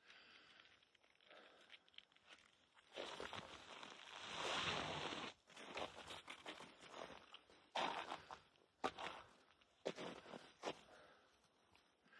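Footsteps crunching in snow: a longer run of crunching about three to five seconds in, then single steps every second or so.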